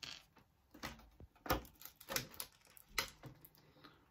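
A clear plastic blister tray being handled as small action-figure accessories are pried out of it: irregular clicks and crackles of thin plastic, the sharpest about a second and a half and three seconds in.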